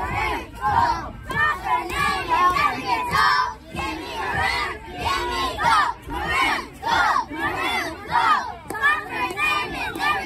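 A squad of young girl cheerleaders shouting a cheer in unison, loud chanted syllables in a steady rhythm.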